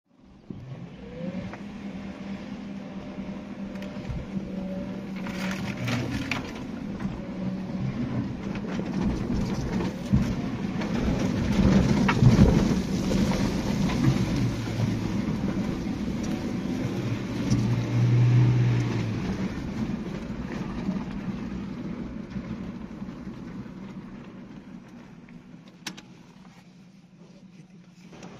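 Suzuki Jimny's 1.5-litre four-cylinder engine running at low speed, heard from inside the cab as the 4x4 drives slowly over a rough dirt track, with scattered knocks and rattles from the body and suspension. It is loudest around the middle and fades near the end.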